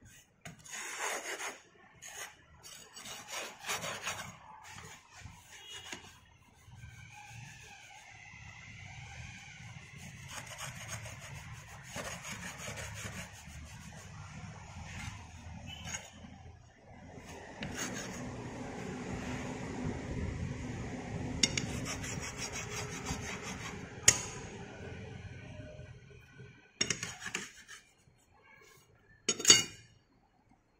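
A flat metal strike-off bar scraping across rammed moulding sand in a moulding box, levelling off the surplus sand in repeated rasping strokes. A few sharp clicks come near the end.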